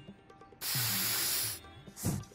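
Cartoon sound effect: a burst of hiss lasting about a second, starting and stopping abruptly, over light background music.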